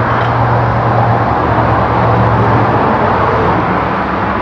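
Steady vehicle noise: a low engine hum under a broad, even hiss, like nearby road traffic.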